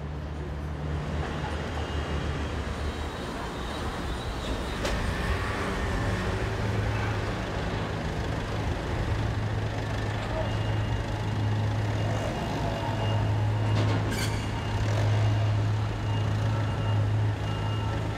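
Steady low mechanical hum of an engine or machinery running, over outdoor background noise, with faint steady high tones coming in about halfway and two short clicks.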